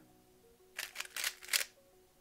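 GAN 356 Air SM speed cube turning fast: a quick run of clicks from its slice and face layers as a U-perm algorithm is executed at speed. The run starts just under a second in and lasts about a second.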